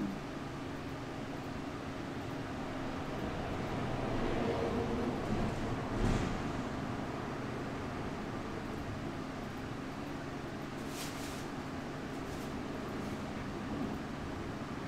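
Steady low mechanical hum with a faint hiss behind it, as from a fan or ventilation running. A soft knock comes about six seconds in.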